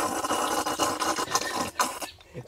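A man slurping rice porridge straight from a bowl held to his mouth: a strong, continuous sucking noise with a sharper gulp just before it stops, which the diners liken to a water pump sucking.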